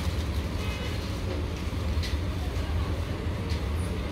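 A steady low rumble of background noise, with faint brief rustles of silk fabric as a folded dress piece is handled and unfolded.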